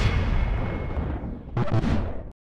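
A deep cinematic boom sound effect with a long, low rumbling tail, followed by a second hit near the end.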